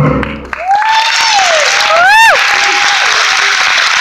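The stage musical's accompaniment ends on its final chord in the first half second. Then an audience applauds, with several whooping cheers rising and falling over the clapping early on.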